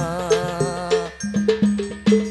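Hadrah ensemble: a sung sholawat line with vibrato over rebana frame drums, the voice dropping out about a second in while the drums carry on alone in a quick, even beat.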